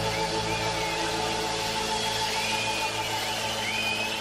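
Live rock music: an electric guitar and band holding one sustained chord that rings on steadily, with thin wavering high tones gliding above it.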